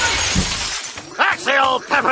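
A cartoon crash sound effect, noisy and shattering like breaking glass, fading out under a second in, followed by a man's cackling laughter.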